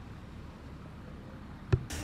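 Faint steady hiss of background noise with no clear pattern, broken by one sharp click near the end.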